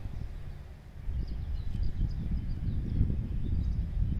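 Wind buffeting the microphone as an uneven low rumble, dipping just before a second in and then louder, with faint bird chirps above it.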